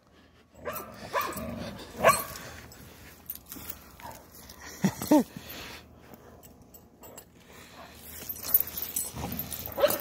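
Dogs playing tug of war, one giving a few short barks, about one, two and five seconds in; the one near five seconds is a pitched, bending bark.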